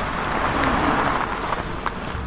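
Sound effect of a truck pulling over and stopping: a rushing noise of tyres and engine that swells and then dies down over a low rumble.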